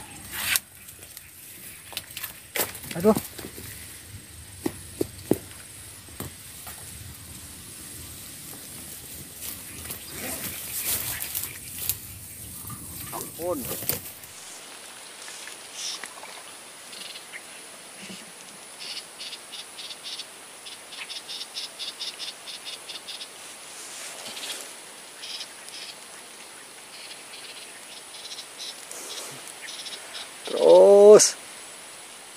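Outdoor marsh sound: rustling and a few sharp clicks in the first half, then an animal calling in a rapid train of short high chirps, about five a second, with scattered single chirps after it.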